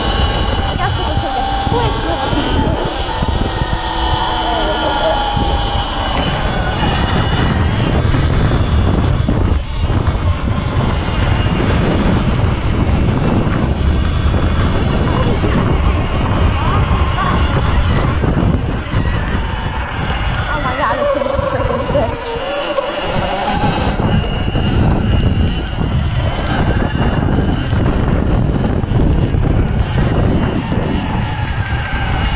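Heavy wind buffeting on the microphone of a moving electric dirt bike, a low, unsteady rumble that continues throughout. Faint voice-like sounds run underneath.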